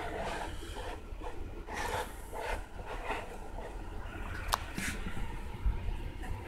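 Steady low rumble of handling noise with a few faint scrapes and one sharp click about four and a half seconds in, as a clear plastic tray of PCB etching solution is handled on the bench.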